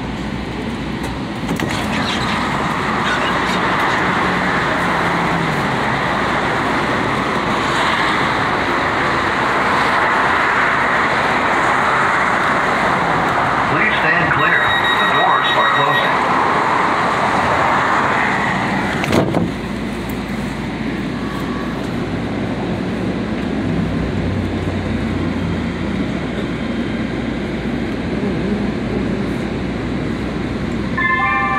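Light-rail train running, heard from inside the car: a loud, steady rushing that swells about two seconds in. A brief high tone comes near the middle and a sharp knock about two-thirds through, after which the noise settles into a lower, steadier rumble.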